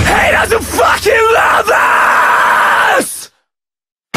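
Metalcore vocalist's harsh screamed line as the drums and bass drop out, over a sustained ringing guitar. It ends abruptly about three seconds in, and after a short silence the full heavy band comes back in near the end.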